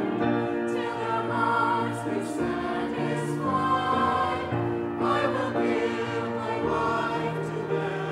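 Choir singing sustained chords with instrumental accompaniment and a steady bass line under the voices.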